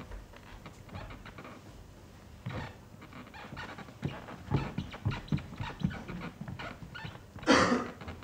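A performer's movements on a bare stage while miming a table tennis match: irregular thumps and scuffs of feet and body. One loud, sharp sound comes near the end.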